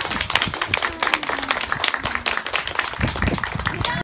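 Small group of people applauding, with a steady patter of hand claps.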